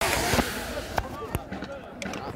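Outdoor street background with faint voices and two sharp cracks about a third of a second apart, a little past the middle.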